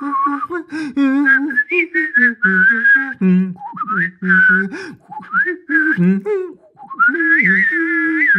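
A person whistling a melody with vibrato while voicing a lower part with the voice at the same time, so that whistle and voice sound together as two lines. The notes come in short phrases, with a brief break shortly before the end, then a longer wavering whistled passage.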